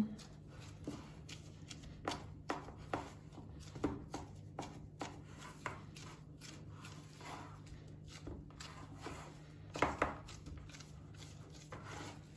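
Gloved hand pressing and spreading cookie dough into a round baking pan: soft, irregular taps and knocks of hand and dough against the pan, the strongest cluster near the end. A faint steady low hum runs underneath.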